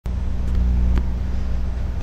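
A steady low hum with a few faint level tones above it, and two faint clicks about half a second and a second in.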